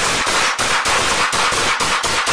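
Police handguns firing a rapid string of shots, about five a second without a pause, recorded through an officer's Axon Body 2 body camera.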